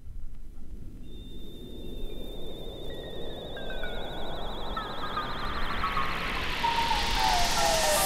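ARP synthesizer electronic effects: a hissing noise swell that grows steadily louder, with a high warbling tone entering about a second in and several pitched tones gliding downward through the second half.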